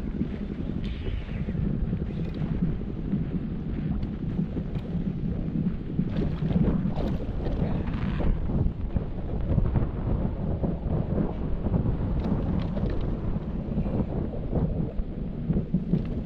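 Wind buffeting the microphone: a steady low rumble that swells and eases with the gusts, with a few brief crackles.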